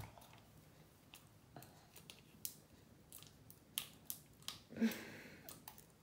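Scissors snipping open a small slime-powder sachet: a few faint, sharp snips spaced out over several seconds.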